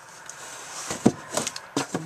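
Handling noise: rustling, then several short knocks and clicks starting about a second in, as the camera is moved about under a cabinet.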